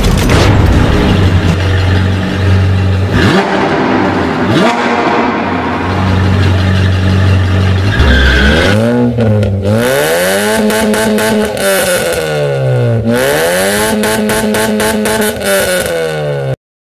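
A loud rushing sound over a low drone, then a sports car engine revving, its pitch climbing, holding and dropping back twice in the second half.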